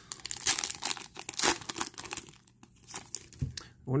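Foil wrapper of a baseball card pack crinkling and tearing as it is opened, in a run of irregular crackles.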